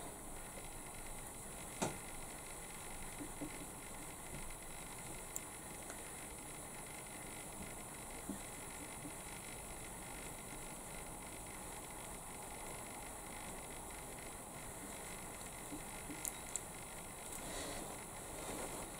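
Faint steady hiss with a few light, scattered clicks from a metal crochet hook and yarn being worked by hand.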